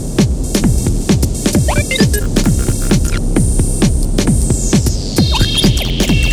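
Electronic music played on hardware synthesizers and drum machines: a low throbbing bass under repeating drum hits that drop sharply in pitch. A high synth tone glides down near the end.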